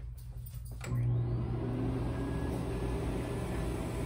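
Player piano's suction mechanism running as the paper roll winds on, before any notes play: a steady mechanical hum and rush. A few light clicks come in the first second, and the sound steps up louder about a second in.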